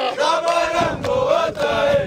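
A group of men singing a chant together, their voices holding and bending one wavering line of melody.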